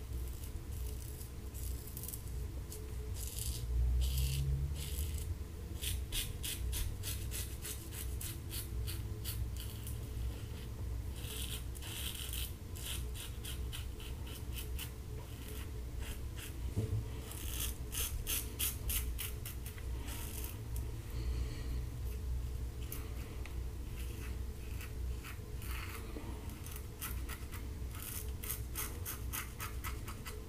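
Standard aluminum double-edge safety razor with a Kai blade scraping through lathered stubble on the neck and jaw, in runs of quick short strokes with pauses between them.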